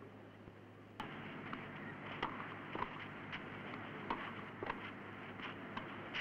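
Tennis ball struck back and forth in a fast doubles rally: a string of sharp pops from about a second in, roughly half a second to a second apart. Under it runs the steady hiss of an old film soundtrack, which gets louder about a second in.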